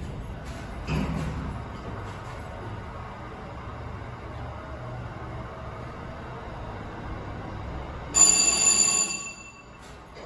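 Schindler hydraulic freight elevator car travelling: a thump about a second in, then a steady low hum as it moves. Near the end the arrival bell rings once for about a second.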